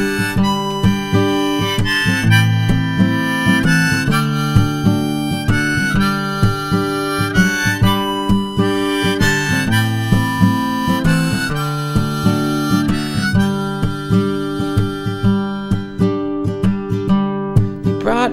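Harmonica playing a melody over strummed acoustic guitar, an instrumental break in an acoustic folk-pop song.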